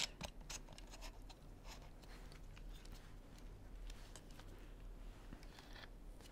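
Faint clicks and scrapes of a Sony A6300 camera being handled and fitted to a gimbal's mounting plate, with a sharper click at the very start.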